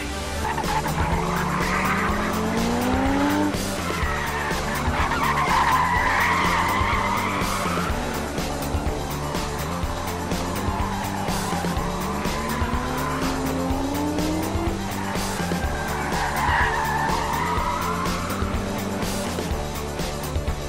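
Corvette convertible's V8 revving up under hard acceleration twice, each pull followed by a spell of tyres squealing in hard cornering, over background music.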